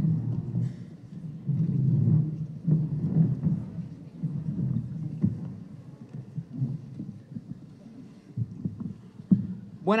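Uneven low rumbling and bumping from a handheld microphone being handled, heaviest in the first few seconds, with a couple of sharp clicks later on.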